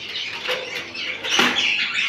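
Small caged birds chirping and twittering in high, short notes, with one brief rustling burst about one and a half seconds in.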